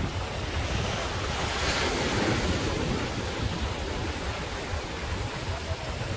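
Surf washing onto a sandy beach, with wind buffeting the microphone; the hiss of a wave swells up about two seconds in and then eases.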